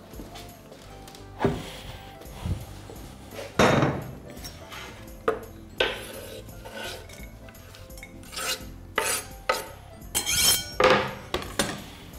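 Kitchen handling noises: a wooden cutting board and a glass bowl knocking and scraping as chopped pepper is tipped from the board into the bowl, a string of separate sharp knocks, over quiet background music.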